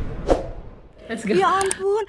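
A single short knock about a third of a second in, then a high-pitched voice from about a second in.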